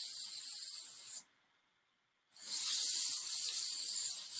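A woman hissing like a snake through bared teeth: one long hiss that stops about a second in, then after a pause a second long hiss.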